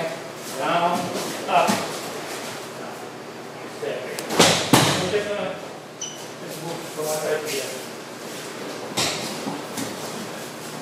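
Aikido breakfalls on a padded dojo mat: two loud slaps and thuds close together about halfway through, and another near the end, as the thrown partner hits the mat.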